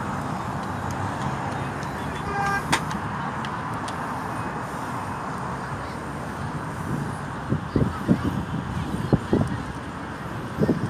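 Steady outdoor background noise with a brief car horn toot about two and a half seconds in. In the last few seconds, wind buffets the phone's microphone in uneven gusts.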